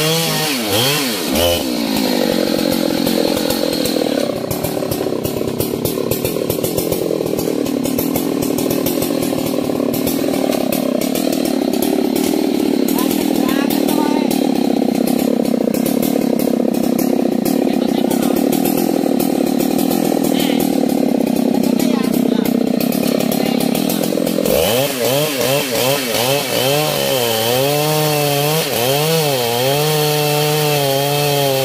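Husqvarna 3120 XP, a big single-cylinder two-stroke chainsaw, running under load as it cuts through a thick rain-tree (trembesi) log. Its engine note wavers up and down as the bar bites. About 24 seconds in the sound changes abruptly to a clearer, wavering engine note.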